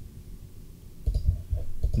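A few soft clicks of a computer mouse in the second half, as options are picked from a dropdown menu.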